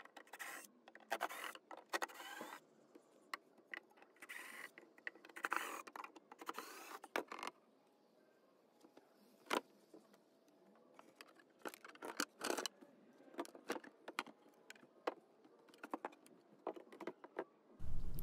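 Cordless drill running in short bursts as it backs screws out of a wooden coffee table, then a scatter of sharp clicks and knocks as loosened wooden parts are handled and set down.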